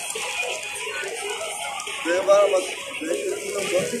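People's voices talking and calling out, loudest about halfway through, over quieter background music.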